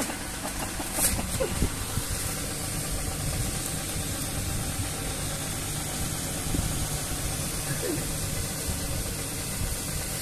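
A motor running steadily at idle: an even, low rumble with a faint hum.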